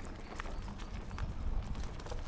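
Chromag Stylus steel hardtail mountain bike rolling down a dirt trail: a steady low tyre rumble with irregular clicks and rattles from the bike as it goes over bumps.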